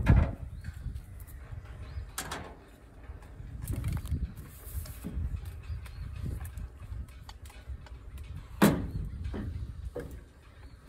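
Knocks and clunks of a Husqvarna Rancher chainsaw being lifted and turned around on a pickup's tailgate, over a low rumble. There are several separate knocks, and the loudest is near the end.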